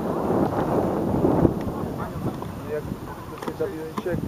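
Wind buffeting an outdoor microphone, loudest in the first two seconds, with faint distant voices from the pitch coming through later on.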